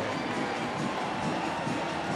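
Steady stadium crowd noise from the stands.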